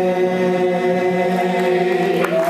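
A cappella group of mixed men's and women's voices holding a sustained closing chord, several notes held steady together.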